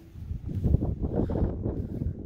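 Wind gusting across the microphone, a rough low rumble that builds up about a third of a second in and stays strong.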